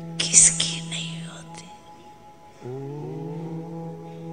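Slow meditation music built on a steady held drone, with short breathy, whispery sounds in the first second. About two and a half seconds in, a new held note slides up into place and sustains.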